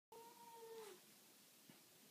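A wet cat wrapped in a towel gives one faint, drawn-out meow, close to a second long, its pitch dropping at the end.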